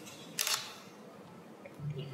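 Quiet room tone with one short, sharp, hissy noise about half a second in.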